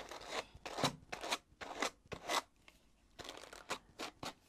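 A pair of Howard wooden hand carders with wire teeth drawn past each other in a rocking motion, the teeth combing through wool fibre to blend red and white colours: a series of short scratchy strokes, with a pause of about a second after the middle.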